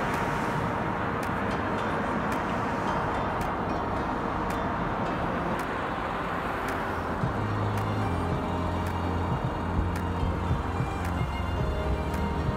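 Steady rush of car traffic on a wide multi-lane city road, mixed with background music. The traffic noise thins out about seven seconds in, and the music's low notes come forward.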